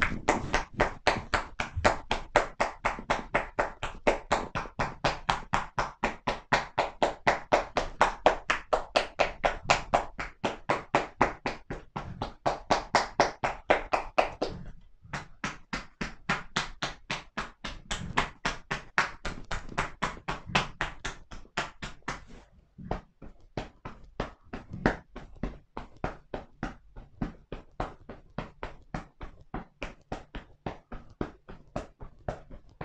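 Hands tapping quickly and rhythmically on a seated man's shoulders and back through his T-shirt in percussive tapping massage (kōda-hō), about five strikes a second. There is a brief pause about halfway, and the strikes are lighter in the last third.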